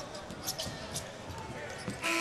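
Basketball arena crowd noise during live play, with a few short, sharp sounds from the court about half a second and a second in.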